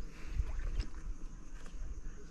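Wind buffeting the microphone with a low, uneven rumble, and a light knock or two as stones are set in place on a dry-stone and mud wall.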